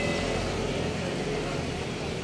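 Street traffic: a steady low rumble of motor vehicles running nearby.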